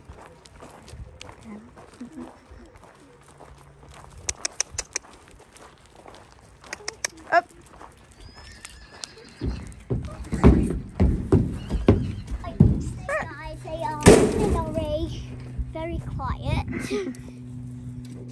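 Pony's hooves on a wooden horse-lorry ramp as she is led in: a run of heavy thuds during loading, followed by a horse whinnying near the end.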